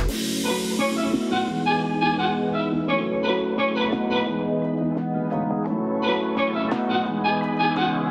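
Instrumental background music: plucked notes over held low notes, at an even level.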